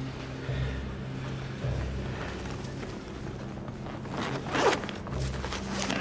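A bag's zip being pulled open, the rasp peaking about four and a half seconds in, over a low steady drone.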